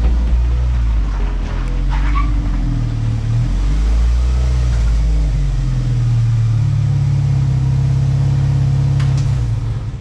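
Class 5 Baja Bug race car's engine running at low speed as the car rolls slowly forward. It is a deep, loud drone that shifts in pitch in the first few seconds and then holds steadier and stronger from about six and a half seconds in.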